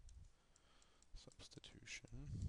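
Faint, scattered clicks and taps of a stylus pen on a tablet surface as a word is handwritten, otherwise near silence; most of the clicks come in the second half.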